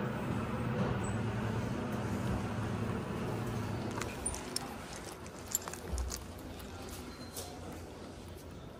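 Hydraulic elevator in motion, heard inside the car as a steady low hum that fades about halfway through as the ride ends. Then a few clicks and knocks and a low thump follow, as the doors open.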